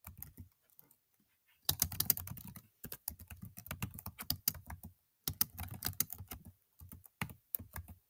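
Typing on a computer keyboard: quick runs of keystrokes broken by short pauses, with a longer pause about half a second in.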